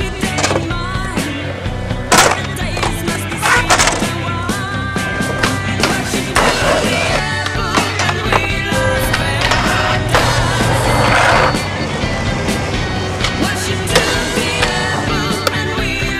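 Skateboard wheels rolling on hard ground, with several sharp board pops and landings, over a music track.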